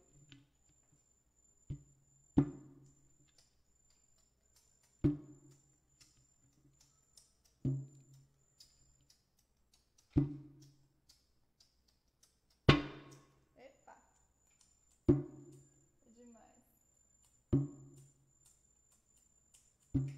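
Small handheld drum struck by hand in a slow, steady beat of single hits, about one every two and a half seconds. Each hit is a low boom that rings briefly. The hit about halfway through is the loudest.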